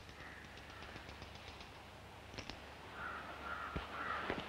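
Crows cawing faintly, with a run of quick light ticks over the first second and a half.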